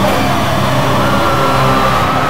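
Gothic metal band playing live and loud: heavily distorted guitars and low bass, with a long held high note coming in about a second in.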